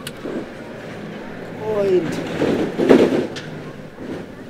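A man speaking in short phrases: film dialogue, loudest near the end.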